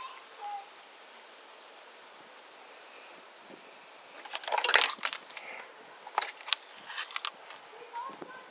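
Handling noise as a handheld multimeter and its test leads are picked up and moved: a scuffing rustle about halfway through, then several sharp plastic clicks.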